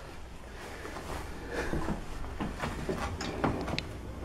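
A cat pawing and nosing at a pile of snow on a wooden floor: faint, irregular light scratches and ticks over a low steady hum.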